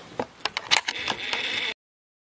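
Handling noise from the camera being picked up and moved: a run of short clicks and knocks, with a faint steady high whine in the second half. The sound cuts off suddenly near the end.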